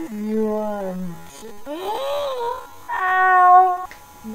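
A young woman's voice making three drawn-out wordless calls: the first slides down, the second rises and falls, and the third is held high near the end.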